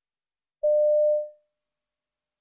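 A single electronic beep: one steady mid-pitched pure tone starting just over half a second in, lasting well under a second and fading away quickly. It is the signal tone that marks the start of a listening-test extract.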